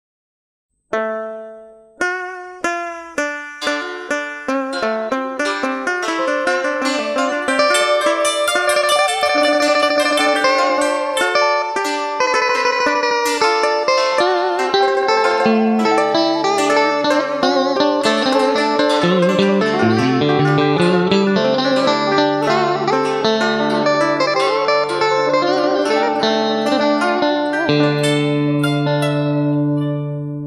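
Instrumental karaoke backing track of plucked string instruments, with no voice. It opens about a second in with single plucked notes that ring out and come faster and faster. It then fills into a dense melody with bending, wavering notes, and a low bass line joins about halfway.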